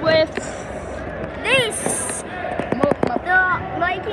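Voices calling and shouting in a school gymnasium during a basketball game, with a few sharp knocks near the end.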